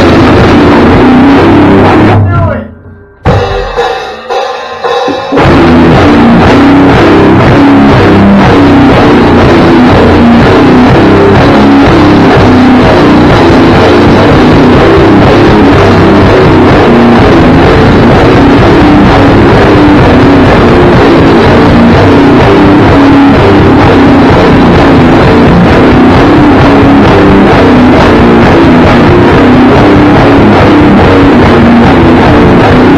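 Rock band of electric guitars and drum kit playing very loud. It breaks off briefly in the first few seconds, then comes back in full about five seconds in and plays on without a pause.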